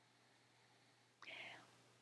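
Near silence, then a short breathy sound a little over a second in: a person drawing breath.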